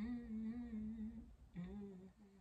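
A woman humming: one steady held note for just over a second, then a shorter, slightly lower note.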